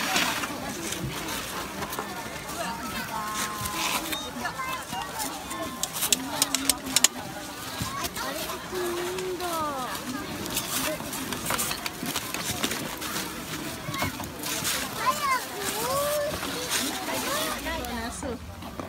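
Overlapping voices of several people in the background, some high and gliding like children calling, without clear words. A quick cluster of sharp clicks comes about six to seven seconds in.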